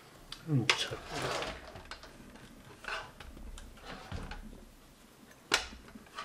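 Handling sounds at a table: plastic golf discs and metal measuring tools being picked up and set down, with scattered light clicks and rustles and one sharper click near the end. A few faint murmured words come in between.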